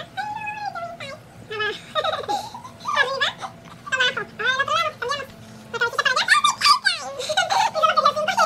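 A young boy laughing and giggling in repeated short bursts.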